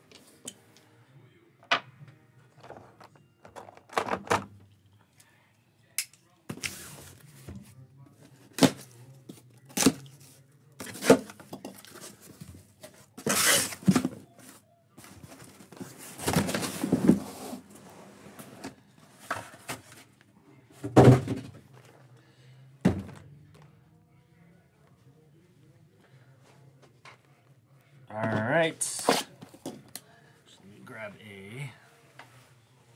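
A cardboard case of hobby boxes being opened and unpacked by hand: a string of separate knocks and thunks as the cardboard and the boxes are handled and set down, with longer stretches of rustling, scraping cardboard.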